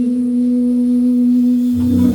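A female singer holding a long, steady low note at the close of a song, with a bass note coming in under it near the end.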